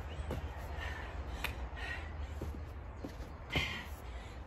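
A crow cawing several times, the loudest caw near the end, over a steady low rumble, with a couple of sharp knocks.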